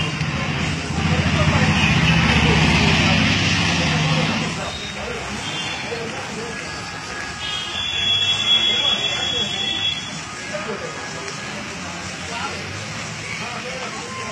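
Café background: other people's voices, with a loud machine-like noise for about three seconds near the start and a high steady tone from about eight to ten seconds.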